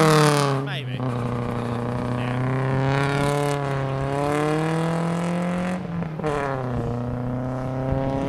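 Car engine held at high revs as the car slides sideways through a wet corner while drifting. The engine note dips briefly about a second in and again near six seconds, then climbs back.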